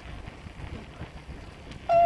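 Low, steady rumble of wind and road noise while moving along a street. Just before the end, a sudden loud, high-pitched tone starts and wavers in pitch.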